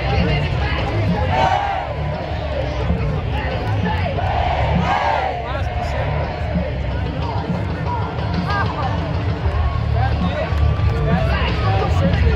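Football stadium crowd noise with music over the public-address system, with voices calling and shouting through it.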